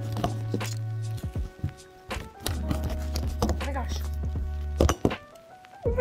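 Music with a steady deep bass note, over a phone being fumbled and dropped: several sharp knocks and thumps of handling right at the microphone.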